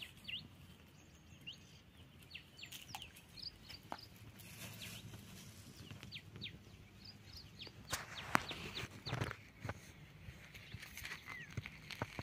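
Faint outdoor bird chirping: many short, high calls scattered throughout, with a couple of louder sudden sounds about eight and nine seconds in.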